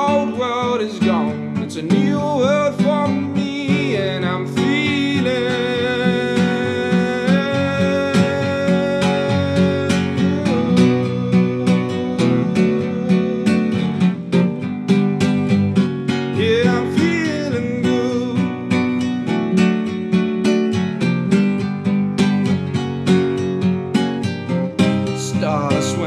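Acoustic guitar, capoed, strummed steadily as accompaniment, with a man singing over it in places.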